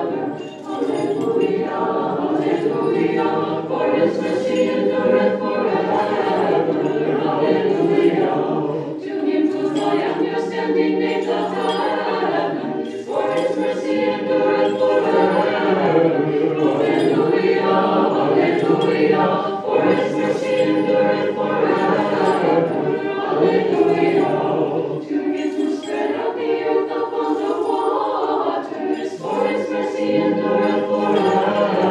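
Unaccompanied choir singing Orthodox liturgical chant, several voices holding long sustained phrases with short breaks between them.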